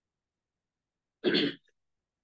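A person clears their throat once, a short burst a little over a second in.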